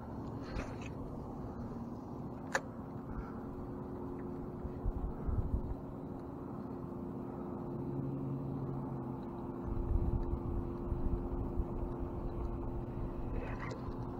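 Steady low hum of a boat motor over water, with low wind rumble on the microphone growing from about ten seconds in and a single sharp click a few seconds in.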